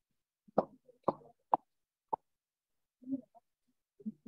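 A few short, sharp pops or knocks, four in quick succession over the first two seconds, the first being the loudest. A brief low, muffled sound follows about three seconds in.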